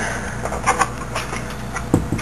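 A few light clicks and scrapes of a PCI expansion card being pressed and worked into its motherboard slot against the metal case, the card not seating. A steady low hum runs underneath.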